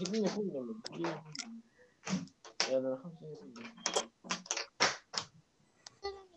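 Indistinct talking from young children in a video call, in short broken phrases.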